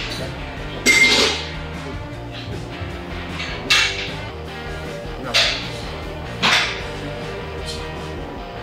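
Background music, broken by four short, sharp, hissing bursts one to three seconds apart: a woman's forceful exhales on the pulls of a one-arm cable exercise. The first burst is the loudest.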